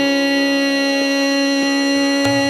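Hindustani classical singing in slow-tempo raga Shudh Kalyan: the voice holds one long steady note over the sustained accompaniment, with a couple of soft tabla strokes in the second half.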